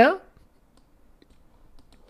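A man's voice trails off at the start, then faint, scattered clicking of a computer keyboard.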